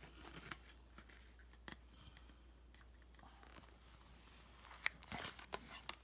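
Metal snips cutting open a carded plastic toy package: a few faint clicks, then a run of sharp snips and crunching of the packaging near the end.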